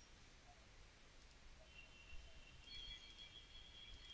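Near silence: faint room tone with a few quiet computer mouse clicks, about a second in and again near the end.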